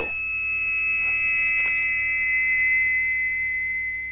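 A steady, high-pitched synthesized tone, a few close notes held together as a tense sting in a film score, beginning to fade near the end.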